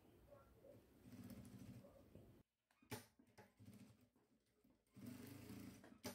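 Faint short runs of a JACK industrial sewing machine stitching, each about a second long, with near silence and a few small clicks between them.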